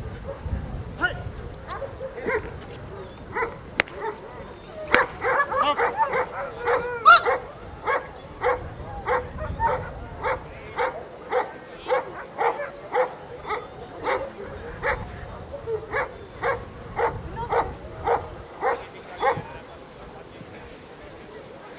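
A dog barking repeatedly: a few separate barks at first, a quick flurry of barks about five seconds in, then steady barking at about two barks a second.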